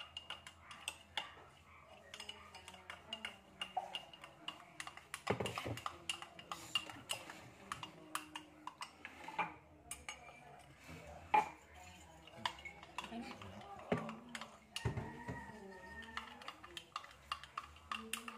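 A metal spoon clinking against the inside of a drinking glass as cocoa powder and water are stirred, a quick, irregular series of light clicks.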